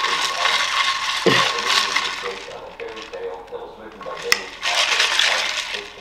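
A straw stirring a drink in a plastic tumbler, a rattling clatter in two stretches with one sharp click a little past four seconds.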